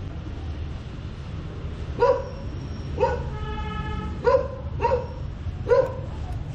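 A dog barking in short single barks, about five of them starting about two seconds in, with a held, steady call of about a second in the middle, over a steady low background rumble.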